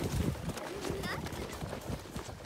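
Footsteps crunching in packed snow, a quick, irregular run of crunches from the dog's paws and walking boots, with a brief high voice sound about a second in.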